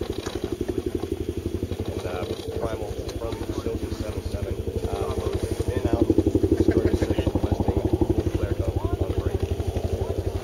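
Helicopter rotor beating rapidly and steadily, growing louder about six seconds in as the helicopter comes closer. Faint voices underneath.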